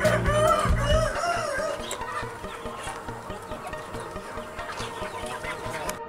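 A flock of domestic chickens clucking and calling, busiest in the first second, over background music.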